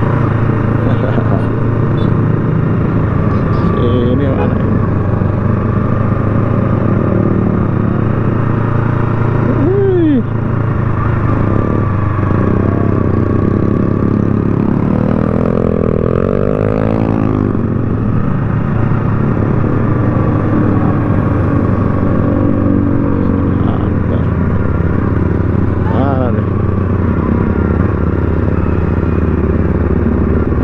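Motorcycle engine running steadily at low speed, heard from the rider's own bike, with other motorcycles passing and revving close by. Their engines sweep up and down in pitch a few times, the longest about halfway through.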